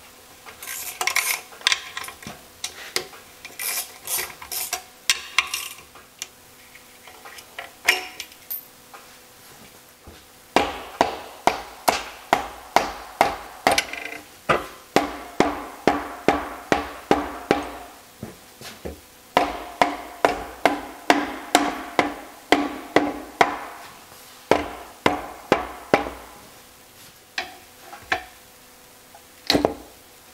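A ratchet wrench clicking for the first ten seconds or so as the cover bolts of a Porsche 915 transaxle's differential side cover are backed out. Then a plastic mallet strikes the cover over and over in runs of about two blows a second, each blow ringing briefly in the metal case, to knock the cover loose.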